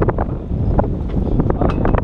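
Wind buffeting the microphone, a heavy steady rumble, with scattered light clicks and knocks over it.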